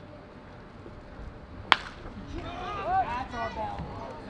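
A single sharp crack of a wooden bat hitting a pitched baseball a little under two seconds in, followed by shouting voices as the fly ball carries to the outfield.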